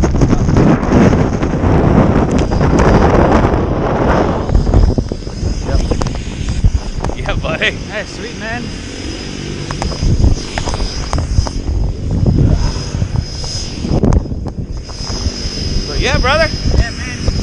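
Wind rushing over the microphone of a tandem skydiver's camera during the parachute approach to landing, loud for about the first four seconds and then easing off. After that it is quieter, with short bursts of voices.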